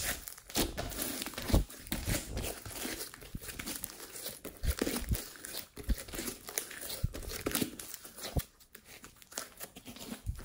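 Thick slime with mixed-in bits being stretched, folded and squeezed by hand, giving a dense, irregular run of sticky crackles and pops. The crackling thins out and gets quieter about eight and a half seconds in.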